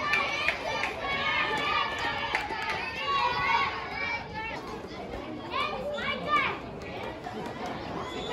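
Many children's voices shouting and calling over one another, with a few louder, high calls about six seconds in.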